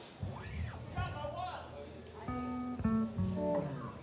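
A few single notes picked on an electric guitar through an amplifier between songs: about three held notes in the second half, each ringing briefly before the next.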